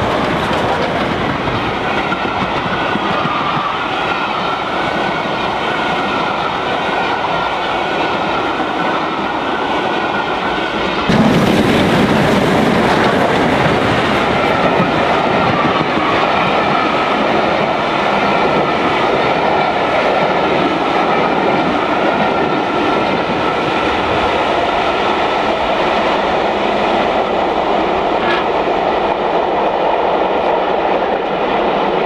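A steam-hauled train of passenger coaches rolling past close by at speed: a steady rail roar with wheel clatter and a faint high ring. The sound steps suddenly louder about eleven seconds in.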